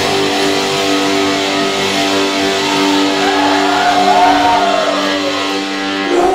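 Distorted electric guitars holding a chord that rings on without drums, with a long rising-and-falling wailing tone over it about three seconds in.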